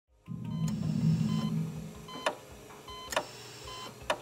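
Intro music sting: a low droning chord that fades after about two seconds, short electronic beeps recurring roughly once a second like a heart monitor, and a few sharp swishing accents.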